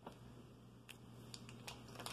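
Faint, crisp little snaps and ticks, four or five in all, as fingers tear salad leaves into tiny pieces and press them onto a small plastic plate.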